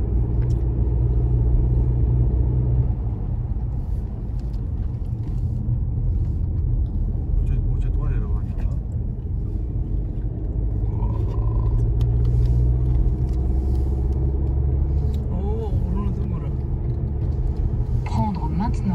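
Car driving, heard from inside the cabin: a steady low rumble of engine and tyre noise, a little quieter for a few seconds after the start and building again later.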